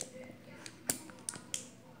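Plastic squeeze bottle of sauce being squeezed upside down over a bowl: about five faint, short, sharp clicks and spurts as the sauce sputters out.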